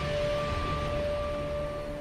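Background film score: a single high tone held steadily over a low rumbling drone, easing slowly in level.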